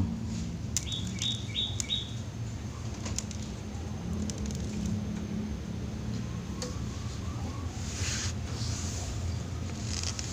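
Young zebra dove fluttering its wings in a bamboo cage, with a short run of four high chirps about a second in.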